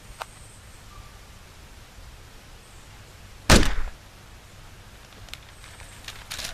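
A single loud, sharp impact about halfway through, dying away within half a second, over a faint steady background hiss.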